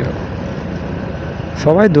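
Motorcycle riding at road speed: a steady rush of engine, wind and road noise on the microphone, with a man's voice starting near the end.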